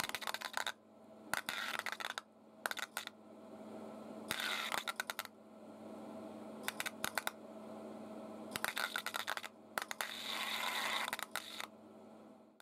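Pulse EDM (electrical discharge machining) electrodes sparking in a fluid bath: bursts of rapid sharp crackling, some under a second and a few longer, coming every second or two over a steady low hum.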